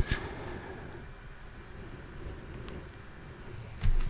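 Faint, steady low background rumble with no speech, opening with a short click and ending with a brief low thump.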